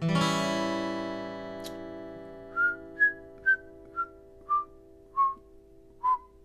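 An acoustic guitar strums an open A7 chord that rings and fades. Then a man whistles a string of short notes, about two a second, mostly stepping down in pitch.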